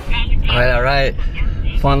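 Steady low engine and road rumble inside a pickup truck's cab, under a man's voice that speaks near the end.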